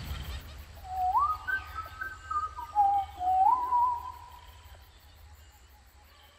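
A short run of clear whistled notes, each sliding up and then held, heard from about one second in to about four seconds in, over a faint low hum of ambience.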